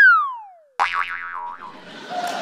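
Comic 'boing'-style sound effect, as dubbed into TV comedy: a whistle-like tone that has just swooped up slides down in pitch over about three-quarters of a second and stops. A second short, busier sound effect follows just under a second in.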